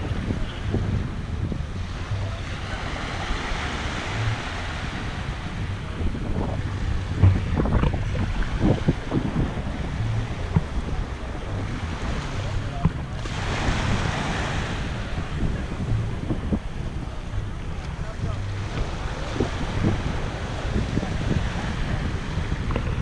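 Small waves washing up and lapping on a sandy shore, with the wash swelling a few seconds in and again about halfway through. Wind buffets the microphone throughout with a heavy low rumble.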